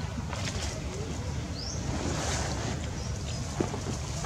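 Wind buffeting the microphone: a steady low rumble, with a few faint clicks and one short rising high chirp partway through.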